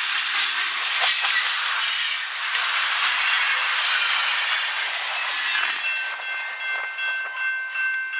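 Tail end of a long loaded freight train rolling past: tank cars and a covered hopper, their steel wheels clacking over the rail joints. The rolling noise thins as the last car goes by, and a steady high ringing comes in near the end.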